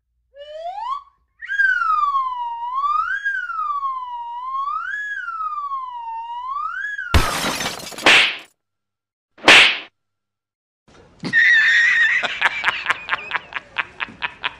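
A whistle-like tone that glides up, then wavers smoothly up and down about once a second for several seconds. About seven seconds in, a sudden hard whack of a hand striking a head cuts it off, with a second short hit a couple of seconds later. Near the end comes a steady high tone with rapid ticking.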